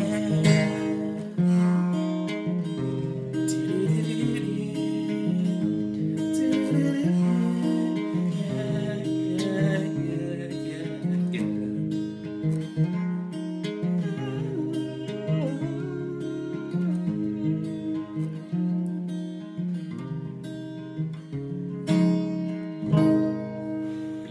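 Acoustic guitar strummed in a steady rhythm, changing chords every second or so.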